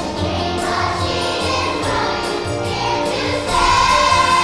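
A young children's choir singing along with music accompaniment that has a steady bass beat; the music grows louder near the end.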